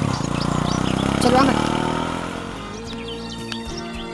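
Auto-rickshaw engine running steadily, growing quieter in the second half, under background music.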